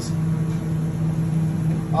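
Steady low hum of running kitchen equipment, with no distinct knocks or clicks.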